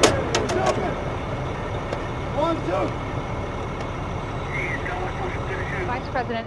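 A sharp bang at the very start, then a steady low rumble with faint voices over it.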